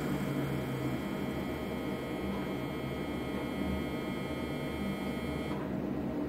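Steady electrical hum of room equipment, with a few level tones and a faint hiss that drops away near the end.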